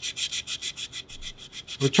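220-grit silicon carbide paper rubbed by hand over a stainless steel bottle in quick back-and-forth strokes, about five a second. The sanding cross-hatches the steel to a dull, textured finish so that a strain gauge will bond to it.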